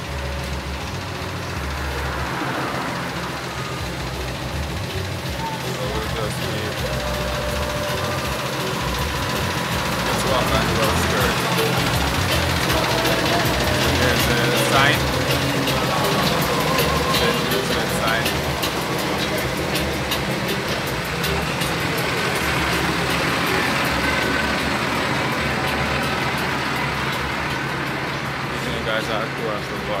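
Roadside ambience: a steady vehicle engine hum under indistinct background voices.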